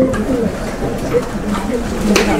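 Indistinct speech: a low voice murmuring a short reply, the words not clear.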